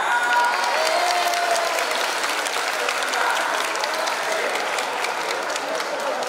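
A large audience of children applauding steadily, with a few voices heard over the clapping.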